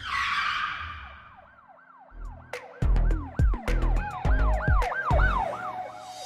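Produced logo-intro sound effect: a whoosh-like hit that fades away, then a fast siren-like wail rising and falling about three times a second. Heavy bass hits and sharp clicks join it from about halfway.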